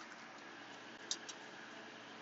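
Quiet room tone with two faint, short clicks about a second in, from hands handling paper craft materials.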